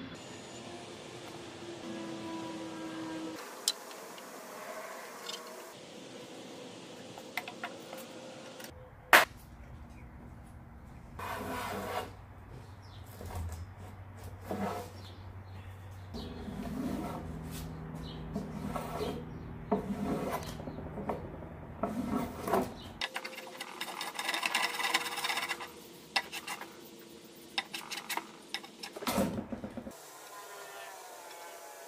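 A sequence of short woodworking sounds from cut-together clips: wood being scraped and rubbed, with scattered knocks and clicks and one sharp knock, the loudest sound, about nine seconds in.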